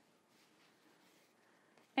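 Faint rustle of quilt fabric being handled as straight pins are pushed through a cloth leader into the quilt's backing and batting.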